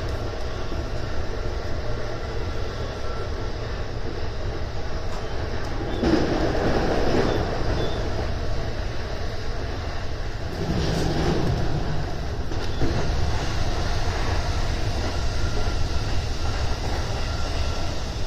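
Running noise inside a Keihin-Tohoku–Negishi Line electric commuter train: a steady rumble of wheels on rail that swells twice in the middle and runs a little louder in the last third as the train enters a tunnel.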